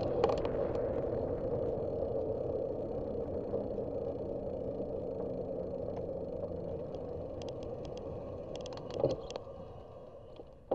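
Wind rush and tyre noise from a bicycle ride on asphalt, fading steadily as the bike slows. Scattered light clicks and rattles come through it, and there is a short knock about nine seconds in.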